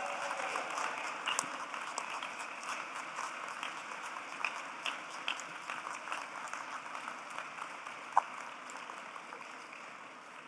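Audience applauding, a dense patter of many hands clapping that slowly dies down toward the end.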